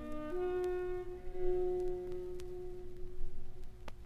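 Quiet instrumental chamber music: a few long held notes that change pitch just after the start, the last one thinning out towards the end. A few faint clicks of record surface noise.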